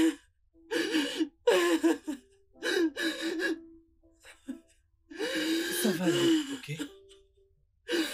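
A woman crying, sobbing and gasping in a run of short wailing bursts with pauses between them, the longest about five seconds in.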